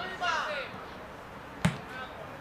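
A football struck once by a foot, a single sharp thump about one and a half seconds in and the loudest sound here. Players shout on the pitch just before it.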